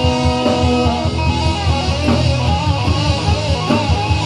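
Live rock band playing an instrumental passage with no vocals: an electric guitar holds and bends notes over strummed guitar, bass and drums.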